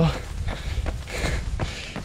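A runner's footfalls on a paved path and his breathing between phrases, over a steady low rumble of wind on the microphone.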